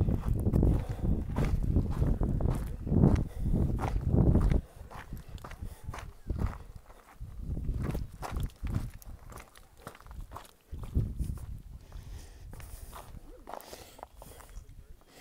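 Footsteps of a hiker walking on a rocky, gravelly trail: irregular short scuffs and crunches. For the first four and a half seconds a low rumble on the microphone runs under them, then cuts off suddenly.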